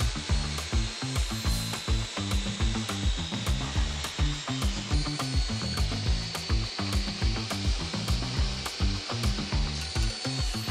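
A table saw running and ripping wooden slats with its blade tilted to a 60-degree bevel, a steady high whine throughout. Background music with a steady beat plays underneath.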